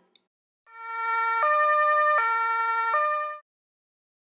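Two-tone police siren alternating between a low and a high note, each held about three quarters of a second: low, high, low, high. It swells in just under a second in and cuts off sharply near the end.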